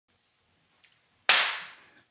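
One sudden sharp crack a little over a second in, ringing briefly in the room and dying away over about half a second.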